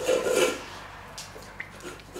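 A dog eating from a bowl on a wooden floor: soft rubbing and scraping with a few sharp clicks.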